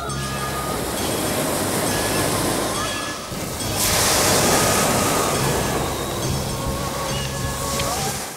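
Sea surf washing onto a beach, with one wave surging loudest about four seconds in, under soft music with long held notes.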